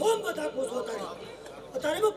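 Men's voices: speech over a microphone with chatter from others around it.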